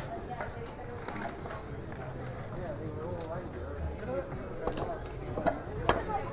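Voices of people chatting in a busy outdoor square, heard at a distance, with footsteps on tiled paving.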